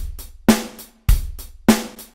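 Dry, uncompressed drum-kit recording played back: a steady backbeat of kick and snare alternating, four hits about 0.6 s apart, with lighter hi-hat ticks between them.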